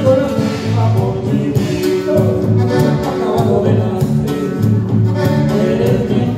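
Live band music played over loudspeakers: a steady beat with regular drum hits, a repeating low bass line and a held melody note through the middle.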